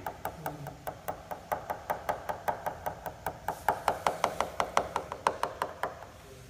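Rapid, even tapping on the glass-fibre skin of a Duo Discus glider wing, about seven taps a second. This is a tap test: the taps get louder and ring more in the second half, and the note shifts where the skin passes over the main spar.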